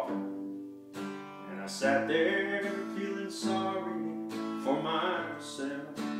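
Acoustic guitar strumming the accompaniment to a slow country ballad, in a pause between sung lines.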